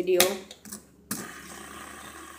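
A click about a second in, then a faint steady whir: a fidget spinner set spinning on a glass tabletop.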